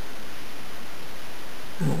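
Steady, even hiss of background noise with no distinct sounds in it; a man's voice starts right at the end.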